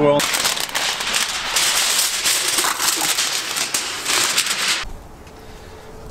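Aluminium foil crinkling and crackling as a smoked turkey is wrapped in it, stopping abruptly near the end.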